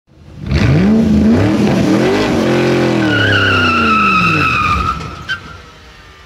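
Car sound effect: an engine revs up, its pitch climbing, then winds down in a long falling note while tyres squeal for a couple of seconds. A short sharp click comes near the end as the sound fades.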